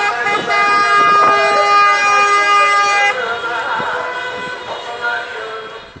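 Several car horns blaring together in a long steady honk that cuts off about three seconds in, followed by fainter honking and traffic noise: drivers sounding their horns as they pass in a motorcade.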